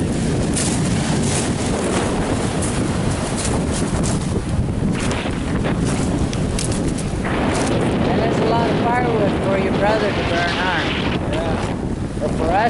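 Strong wind buffeting the microphone, over surf washing onto a pebble beach. In the second half a voice is heard through the wind.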